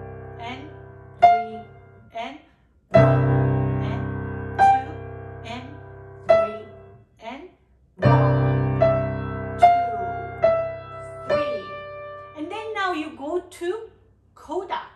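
Piano played slowly, note by note: a low left-hand chord is struck about three seconds in and again about eight seconds in, each left to ring and fade, while the right hand plays short detached notes above it.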